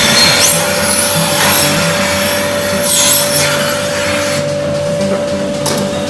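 Milking machine in a milking parlour: a loud, rough hiss of air drawn in under vacuum as the farmer handles a teat-cup cluster, over a steady tone. The hiss eases about four and a half seconds in.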